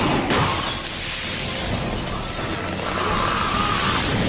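A crash with shattering debris, sharpest just after the start and then a dense spread of noise, over background music.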